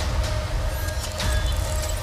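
Film-trailer sound design: a loud, dense rumble with hiss across the range and a faint steady tone held through it.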